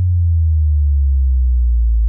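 Deep electronic bass tone, a title-card sound effect, held loud and steady while it slowly slides down in pitch, with a fainter higher tone gliding down alongside it.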